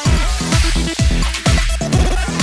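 Electro house music: an instrumental stretch with a steady, even kick-drum beat under electronic synth layers.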